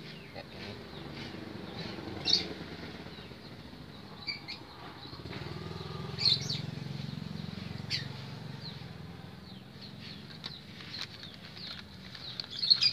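Faint outdoor background: a low hum that swells and fades in the middle, with a few short bird chirps.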